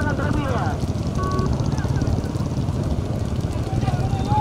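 Steady low rumble of motorbike engines and wind on the microphone, alongside a racing bullock cart. Men's voices shout over it in the first second, and a short steady tone sounds about a second in.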